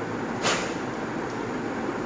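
Steady background noise, like a fan or distant traffic, with one short hiss about half a second in.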